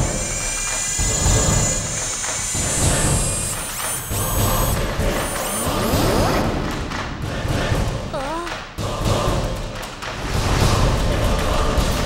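Cartoon sound effects of a large walking robot: heavy thuds and electronic chirps and whirs over dramatic background music, with a cluster of high chirps around the middle.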